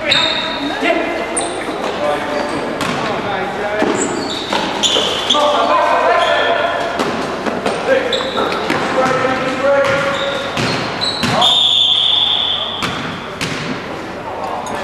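Basketball game sounds in a large sports hall: a ball bouncing on the wooden court and sneakers squeaking sharply on the floor, with players' shouts.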